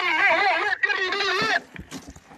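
A long, loud cry with a quavering, wobbling pitch, broken once briefly about three-quarters of a second in and stopping near the end.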